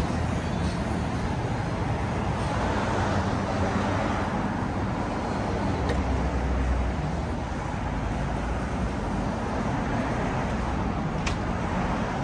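Steady city street traffic noise: a continuous wash of passing cars with a low rumble that swells about four to seven seconds in. A faint click sounds near the end.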